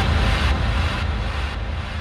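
Transition in an electronic dance-music mix: a noisy wash of sound over a deep bass rumble, without a beat. It slowly fades, and its highest sounds fall away near the end.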